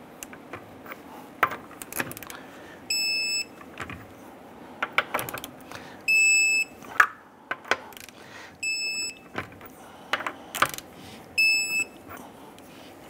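Digital torque wrench beeping four times, about every three seconds: each short beep signals that a lug nut has reached its 110 ft-lb target torque. Light clicks and metal taps of the wrench on the nuts fall between the beeps.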